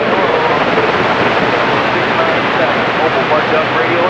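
Cobra 2000 CB radio receiving a steady rush of band static between transmissions, with faint, weak voices buried in the noise. The band is rough, and the distant signals are barely getting through.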